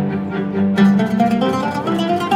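String quartet and 'ūd playing in a steady pulsing rhythm; a little under a second in, quick plucked 'ūd notes come in over the bowed strings.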